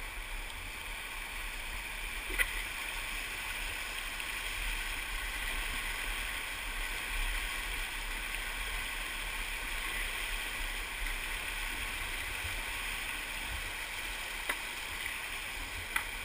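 River whitewater rapids rushing steadily around rocks, with one sharp click about two and a half seconds in.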